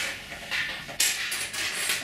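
Fired porcelain rings clinking lightly against each other and the tabletop as they are picked through and sorted by hand, in a few short bursts of clatter.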